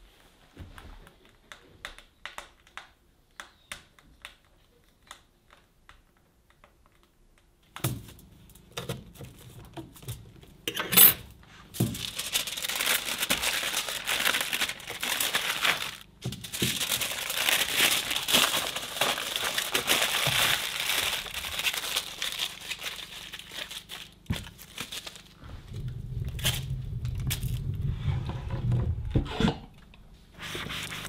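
Aluminum foil crinkling as it is handled, loud and dense for about ten seconds in the middle. Before it come sparse faint crackles from a wood stove fire, and near the end a low rumble.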